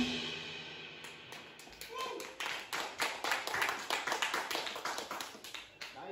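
The last notes of a live rock band dying away, then a small audience clapping in scattered, uneven claps, with a short call from a voice about two seconds in.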